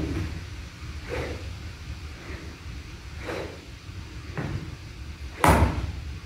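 Practice golf swings: a few faint knocks about two seconds apart, then a much louder thud about five and a half seconds in.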